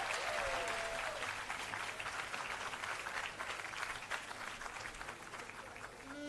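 Audience applauding, the clapping thinning out and fading over a few seconds.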